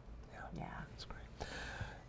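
A short pause between speakers, filled with faint breathy, whisper-like sounds from a person near a microphone, with a light click about a second in.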